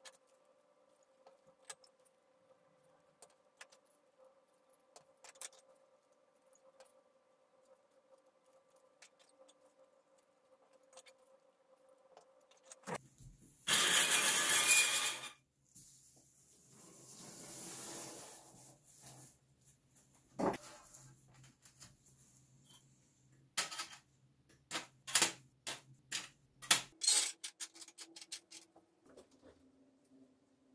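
Light clicks and clinks of pliers working small parts off the toy piano's metal key bars, then about halfway a loud rushing hiss lasting about two seconds and a softer hiss that swells and fades. Near the end comes a run of sharp clicks and clinks as small wooden beads and metal bars are set down on the wooden bench.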